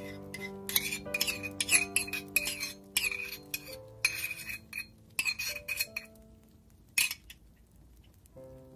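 Tiny metal saucepan clinking and scraping against a miniature blender jug as tomato soup is poured out: quick runs of light clinks that thin out near the end, with one sharp clink late on. Background music with held notes plays throughout.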